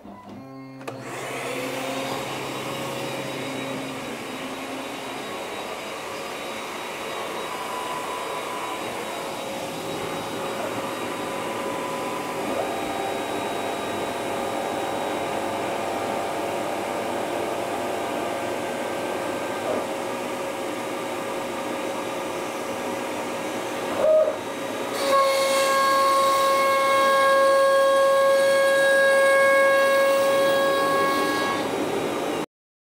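Carbide 3D 1.2 kW, 65 mm CNC router spindle on a Shapeoko 5 Pro, the spindle that failed the cutting test, spinning up about a second in and running with a steady whine. Near the end there is a knock, then the whine turns louder and richer in overtones as the machine works.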